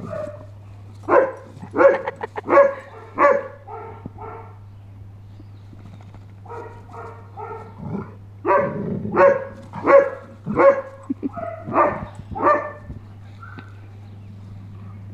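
Dogs barking while they play-fight: a string of short barks about half a second apart, one run in the first few seconds, a short pause, then softer barks building to a louder run near the end.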